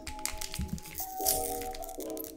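Foil trading-card booster pack being torn open and crinkled by hand, a run of short crackles and rustles with a louder tearing burst near the middle, over steady background music.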